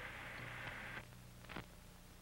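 Faint hiss and steady low hum of an old film soundtrack, dropping a little about a second in, with a faint click about a second and a half in. No explosion is heard.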